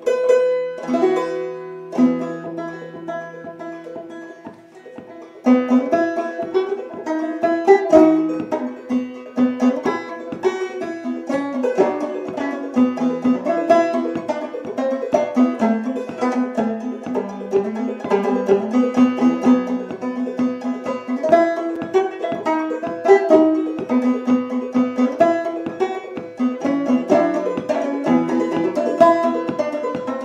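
Nylon-strung Vega banjo: a few separate plucked notes ringing out while a string is tuned, then, about five seconds in, a steady picked Swedish folk tune begins and carries on.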